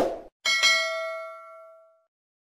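A click right at the start, then about half a second in a single bright bell ding that rings on and fades out over about a second and a half: a subscribe-button and notification-bell sound effect.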